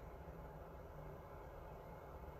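Very quiet room tone with a faint steady low hum.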